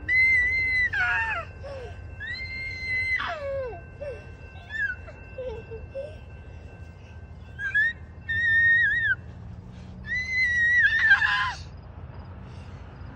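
A child's high-pitched squealing cries, about five of them, each held for up to a second or so, with several sliding down in pitch at the end.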